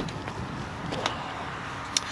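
Steady low background noise with a sharp click at the start, a faint tick about a second in, and another sharp click near the end.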